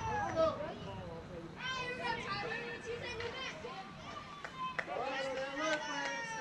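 Young ballplayers' voices calling out and chattering, several at once and overlapping, with a short lull in the middle.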